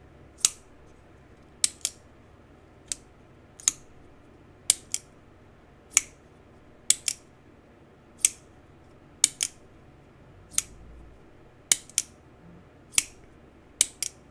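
CIVIVI Vision FG folding knife being flicked open and shut again and again: about eighteen sharp metallic clicks, roughly one a second, some in quick pairs. The action sticks a little when flicked, which the owner takes for a new knife that will smooth out with use.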